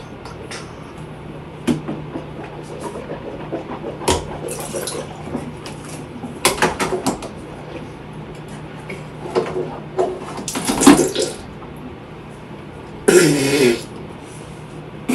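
Children at a bathroom sink: a plastic cup and toiletries clicking and knocking, with short wet bursts of gargling, the loudest just before the end.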